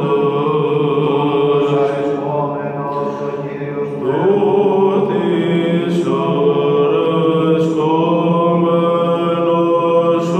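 Byzantine chant: a solo male cantor singing the doxastikon hymn in long held notes that move slowly from pitch to pitch. There is a brief dip in loudness about three seconds in, before a rising note at about four seconds.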